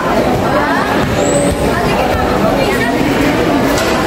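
Voices of people talking and calling out over steady background noise.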